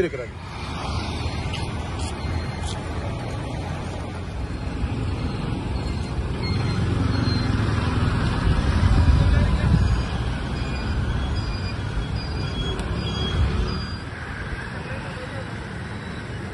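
Road traffic going by, with one vehicle growing louder and passing about halfway through.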